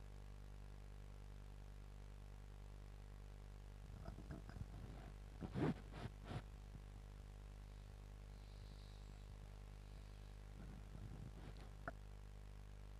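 Near-quiet steady low hum. About four to six seconds in come a few faint, short, sharp sounds, and there is one click near the end.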